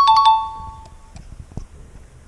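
A descending two-note electronic chime, a higher tone then a lower one like a doorbell's ding-dong. It comes in suddenly and loudly and fades out within about a second.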